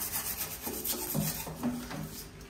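A wooden-backed bristle scrub brush scrubbing a metal shower mixer valve in quick, repeated back-and-forth strokes.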